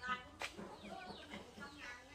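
Chickens clucking faintly in short, repeated calls, with a single sharp click about half a second in.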